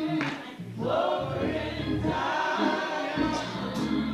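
A choir sings with musical accompaniment. The voices glide through sustained phrases over a steady low bass.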